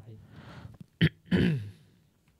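A man clears his throat into a close microphone about a second in: a short sharp catch, then a brief voiced sound that falls in pitch.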